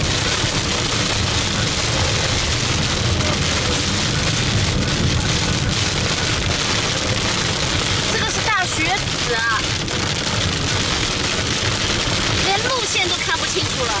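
Sleet pellets (雪籽) hitting a moving car's windshield and body, heard inside the cabin as a steady hiss over the low rumble of tyres on a snow-covered road.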